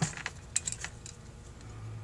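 A few light metallic clicks and taps in the first second as fingers work the float and float tabs in a Holley 2280 carburetor's float bowl. A low steady hum comes in about halfway through.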